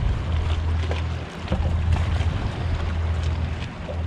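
A boat's engine running steadily at idle, a low hum that dips briefly twice, with wind rushing over the microphone.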